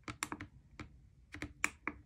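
Plastic push-buttons of a Maxus Elite digital pocket scale clicking as they are pressed repeatedly: a quick, uneven series of about eight sharp clicks in small clusters.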